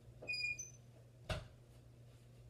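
A wooden bedroom door being shut: a brief high squeak, then one sharp knock of the door closing about a second in.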